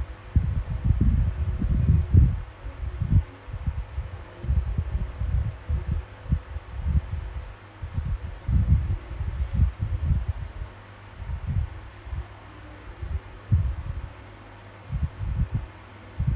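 Black marker strokes coloring in on a paper sheet held on a drawing board. The scrubbing and tapping come through as irregular dull thuds and rubs, with a few short pauses.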